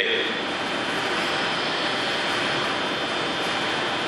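Audience applauding at an even level.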